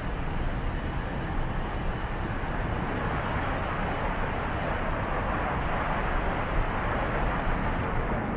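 Steady jet aircraft noise: an even rushing sound with no distinct tones or breaks.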